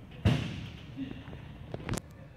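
A sudden loud thump about a quarter second in, ringing off briefly, followed by a lighter knock and a sharp click near the end, over a low steady hall background.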